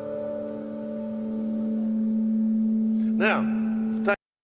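Amplified guitar strings ringing on in sympathy with a just-sung note: a steady hum with a few overtones that slowly swells. A short vocal sound comes about three seconds in.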